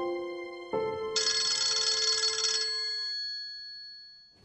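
Mobile phone ringtone: a few chiming notes, then a bright shimmering chord about a second in that fades away by about three seconds in.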